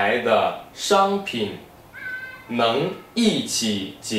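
A man speaking Mandarin in a small room, with a brief high, steady tone about halfway through.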